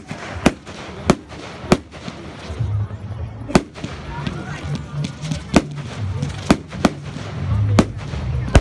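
Aerial fireworks bursting, with about eight sharp bangs at uneven intervals, several in quick succession near the end.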